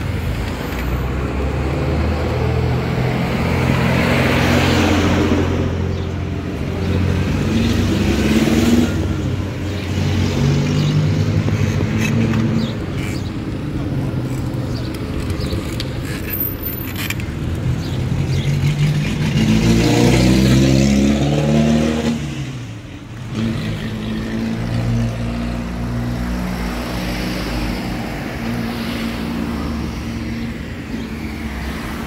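Urban street traffic: car and truck engines running and passing close by. One vehicle passes about four to five seconds in, and a louder one accelerates past with rising engine pitch about two-thirds of the way through.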